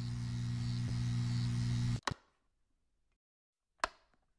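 Steady electrical hum with hiss that cuts off suddenly about two seconds in. It is followed by two short sharp clicks, nearly two seconds apart.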